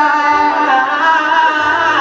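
Live band music heard from the audience seats in a concert hall: grand piano with drums and a wavering melody line over it.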